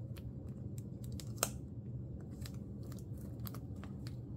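Clear plastic binder pocket pages crinkling and clicking as photocards are handled and slid into their sleeves: a run of small scratchy clicks with one sharper click about a second and a half in, over a low steady hum.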